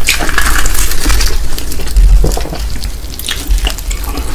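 Close-miked crunching and chewing of crispy BBQ Golden Olive fried chicken batter. The crackling is dense for the first second or so, then thins to a few scattered crunches, with low thuds from the chewing.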